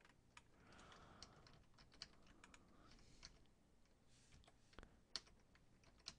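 Faint, irregular clicking of a computer keyboard and mouse while wires are drawn in schematic-editing software.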